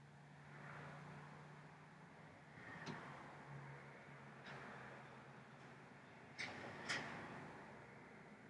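Near silence: a low steady hum and faint handling noise as a mascara tube and compact mirror are handled while mascara is brushed on. Four soft clicks come through, the loudest two close together near the end.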